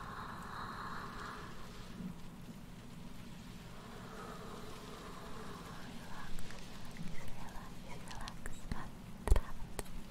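Close-miked ASMR sounds: a soft breathy whisper near the start, then a scatter of small clicks and taps at the microphone from about six seconds in, the sharpest about nine seconds in, over a faint steady hum.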